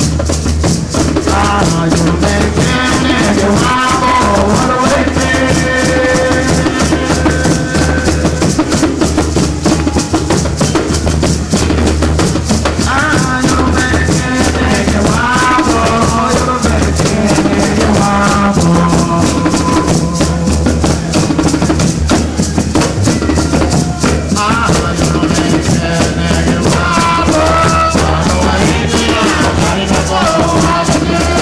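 Live Garifuna music: drums and maracas playing a dense, fast, steady rhythm, with a man singing the lead melody over it.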